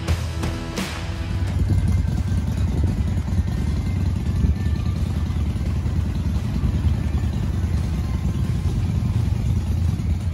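Rock music for about the first second and a half, then a steady low rumble of a motorcycle engine running.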